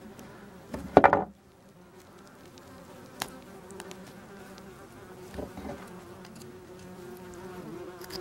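Hornets buzzing in flight, a steady drone that wavers in pitch as they move about.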